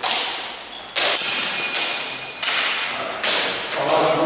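Steel training longswords clashing in sparring: about five sharp blade strikes, each ringing on in the hall's echo.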